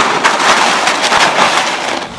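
Ice cubes crunching and clattering as an English bulldog tramps about in a plastic kiddie pool full of ice: a dense run of quick crackling clicks.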